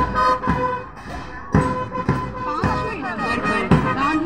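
Parade music: a steady held note under a drum beat roughly every half second, with a voice over it.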